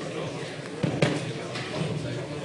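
Indistinct voices murmuring in a room, with two short knocks in quick succession about a second in.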